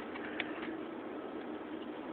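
Low, steady outdoor background noise picked up by a phone microphone, with a faint hum and a single light tick about half a second in.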